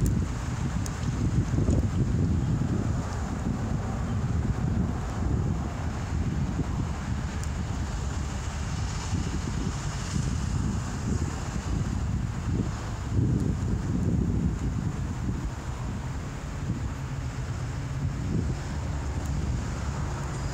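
Wind buffeting the microphone: an uneven, fluttering low rumble that rises and falls.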